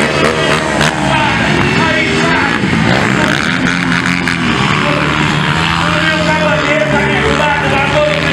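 Small dirt bike engines running and revving, with rising and falling engine pitch, mixed with voices and some music. From about three seconds in, a steady held pitch sits under it.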